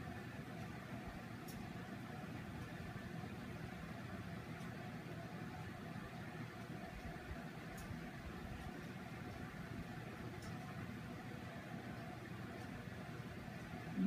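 Steady low hum and hiss of room background noise, with a few faint clicks.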